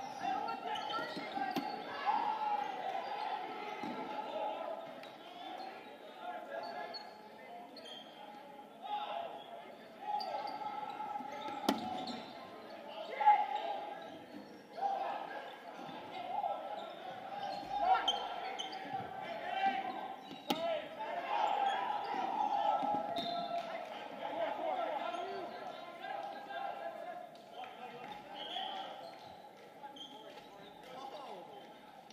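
Dodgeball play in a gymnasium: players call out and chatter, and no-sting dodgeballs smack into players, the floor and walls. The loudest hits come about twelve, thirteen and eighteen seconds in, all echoing in the hall.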